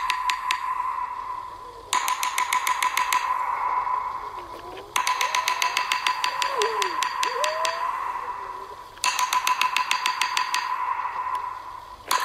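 Sound-design soundtrack of a played-back video: four bursts of rapid clicking, about ten clicks a second, each starting suddenly and fading away, over a steady high tone. A few faint sliding whistle-like tones come in the middle.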